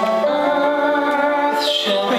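A song performed with singing over instrumental accompaniment, with long held notes and a short break in the voice near the end.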